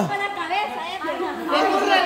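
Chatter of a group, several voices talking over one another.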